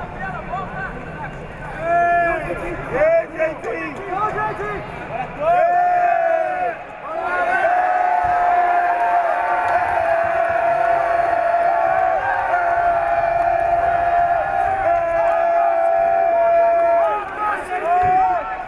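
Coaches and spectators shouting at a grappling match, their raised voices rising and falling in short calls. From a quarter of the way in, one long held shout carries on almost unbroken for nearly ten seconds over the hall's crowd noise.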